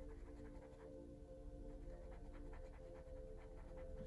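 Faint, quick, scratchy strokes of a fine brush dabbing oil paint onto a wooden portrait panel, several a second and uneven, over a steady low hum.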